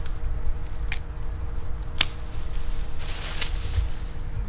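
Secateurs snipping through a thin forsythia stem just above a pair of buds: one sharp click about halfway through, with a fainter click a second before it, then a brief rustle near the end.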